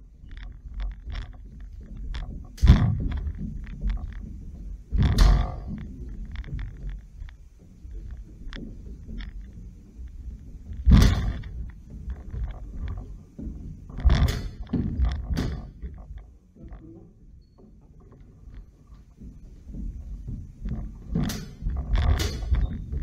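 Sabre bout: fencers' feet thudding and stamping on a wooden hall floor, with steel blades clashing in a handful of sharp, short exchanges, the loudest about 3, 5, 11, 14 and 21 seconds in.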